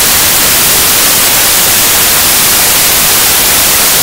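Loud, steady radio static hiss cutting off a transmission mid-sentence.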